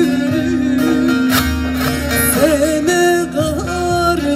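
Turkish folk song played live through a PA: plucked long-necked lute (bağlama) and guitar over a steady held low note, with a woman's voice bending through ornamented held notes.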